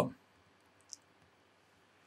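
A single faint click about a second in, typical of a computer mouse button, over otherwise quiet room tone.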